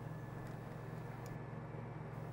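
Stiga Park Pro 540 IX ride-on mower's Honda twin-cylinder engine running steadily with the mulching blades engaged as it drives across the lawn, an even low hum with no changes.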